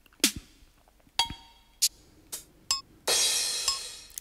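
Single drum sounds from the Groove Rider GR-16 iPad groovebox app, each played by tapping a pad: a low hit that falls in pitch, a few short percussion hits including one with a ringing ping, then a 909-style crash cymbal about three seconds in that fades out.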